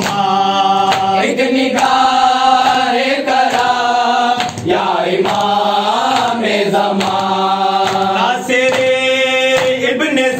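Group of men chanting a noha (Shia mourning chant) in unison in long held phrases, a lead voice reading the lines with the others joining. Rhythmic matam, hands beating on chests, keeps time under the chant.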